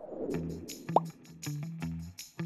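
Quiz-video sound effects over background music: a soft swell of noise as the screen wipes, then music with a steady beat comes in. About a second in, a short pop that rises quickly in pitch is the loudest sound.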